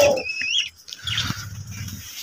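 A small aviary bird gives one short whistled chirp, rising at its end, about half a second in, followed by faint background noise.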